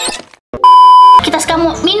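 A single loud, steady electronic bleep lasting about half a second, the classic censor-style beep added in the edit, after a brief silence.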